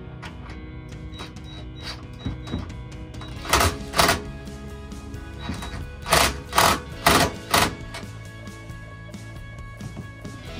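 Six short mechanical bursts, a pair about three and a half seconds in and four more a couple of seconds later, as the nuts and screws are tightened on the inverter's battery cable terminals, over steady background music.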